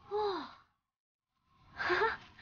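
A high-pitched voice gives a short sighing exclamation of about half a second that falls in pitch. A second short vocal sound comes near the end.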